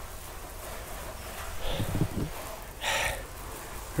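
Steady outdoor rustle with a low rumble, broken by a short noisy burst about three seconds in.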